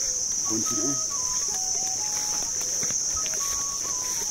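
Insects trilling in a continuous high-pitched drone, with a few short whistled notes at different pitches over it and a brief faint voice about half a second in.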